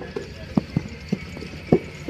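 Dull, hollow knocks, about four spread over two seconds, as wet clay is packed into a wooden brick mold by hand and the mold is handled on sandy ground.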